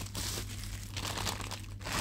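Thin clear plastic bag crinkling and rustling irregularly as the spinning reel wrapped in it is lifted from its cardboard box and handled, easing off briefly near the end.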